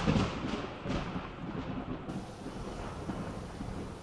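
Thunder rumble dying away under a steady hiss of rain, like a thunderstorm sound effect.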